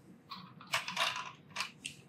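Hard plastic clicking and scraping as a plastic peg is picked up and pushed into a slot in a plastic toy tower: a cluster of short sounds in the first second, then two sharper clicks near the end.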